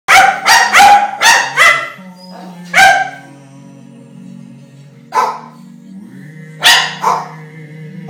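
Tibetan terrier barking in short, pitched yaps: a quick run of about five in the first two seconds, then single barks a few seconds apart and a close pair near the end.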